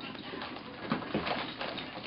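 Excited Pomeranians and a mixed-breed dog whimpering in short squeaks and scuffling as they jump up for a present.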